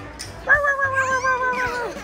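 A young child's long, high-pitched squeal. It starts about half a second in, is held for about a second and a half while sinking slightly in pitch, then drops off.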